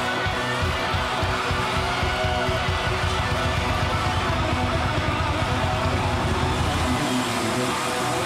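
Live rock band playing loud: electric guitar over fast, dense drumming with rapid low drum strokes. The low drum strokes drop out about seven seconds in while the guitar carries on.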